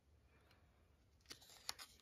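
Near silence with room tone, then a few faint, brief dry clicks in the last second as dried turkey tail mushroom pieces are handled.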